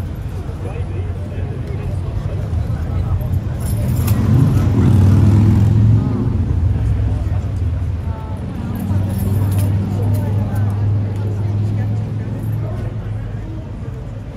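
A vehicle engine running close by, with a steady low hum that swells twice. Voices are heard faintly under it.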